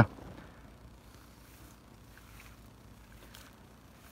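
Quiet outdoor background in an orchard: a low steady hiss with a few faint, brief rustles.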